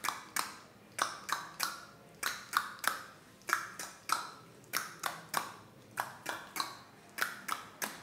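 Tongue clicks, the tongue snapped down from the roof of the mouth, repeated in a rhythmic pattern of about two to three a second. The pitch changes from click to click as the mouth shape changes, making a simple tune.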